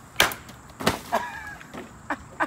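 A heavy 18-inch Bowie knife chopping at a water-filled plastic gallon jug on a wooden bar stool: a sharp crack about a quarter second in and a second hard knock just under a second in, as the blade hits and the stool is struck. A man's voice then breaks into a laugh.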